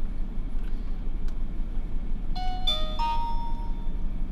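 Ausdom dashcam's power-on chime: a short electronic jingle of about three notes starting about halfway through, the last note held for about a second. It sounds like a doorbell and signals that the camera has switched on.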